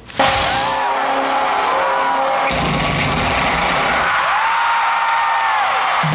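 Loud live stadium concert sound: a large crowd cheering, with long held sung notes over it, cutting in abruptly just after the start.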